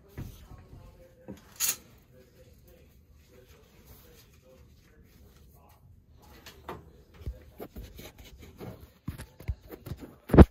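Scattered light clicks and knocks of hand tools and metal pipe parts being handled at a boiler's circulator flanges during a pump swap, with a sharper knock about one and a half seconds in and a quick run of clicks over the last few seconds.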